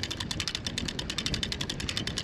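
Vintage DAM Quick 550 spinning reel being cranked, its anti-reverse pawl clicking over the ratchet teeth in a rapid, even run of clicks.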